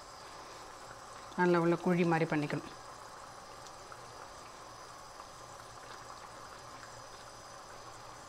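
A woman speaks briefly about a second and a half in; the rest is a steady, faint hiss with no distinct events.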